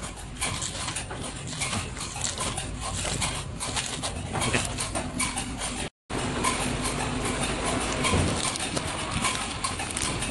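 Sealed plastic pouches of sliced cucumber crinkling and rustling as they are handled, over a faint steady machine hum. The sound drops out briefly just before the six-second mark.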